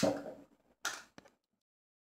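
Silicone spatula scraping and knocking against a glass mixing bowl as soft cheese is knocked off into it: a fading scrape, a second short scrape about a second in and a small click, then silence.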